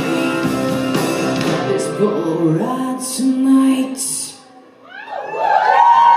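Live pop-punk band playing, with electric guitar and singing. The music drops away for a moment about four and a half seconds in, then swells again.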